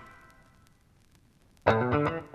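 Music dies away into the near-silent gap between tracks of a vinyl LP, with faint surface clicks from the groove. About one and a half seconds in, the next track starts abruptly, a funk band coming in on a sharp chord.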